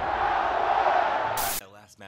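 Logo intro sting: a steady rushing noise that ends about one and a half seconds in with a short sharp hit and a sudden cutoff.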